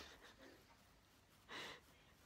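Near silence, broken once about one and a half seconds in by a short breathy exhale: a quiet laugh through the nose.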